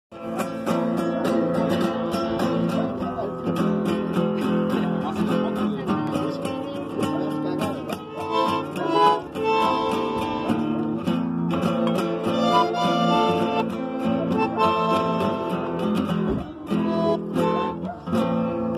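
Live folk duo: a nylon-string classical guitar strummed in a steady chacarera rhythm under held, reedy melody notes from a bandoneón.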